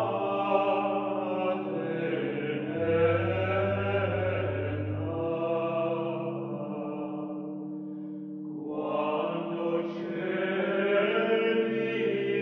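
Slow sung chant music: several voices hold long, steady notes over a low drone. The drone drops out about five seconds in, the singing thins around eight seconds, then swells back.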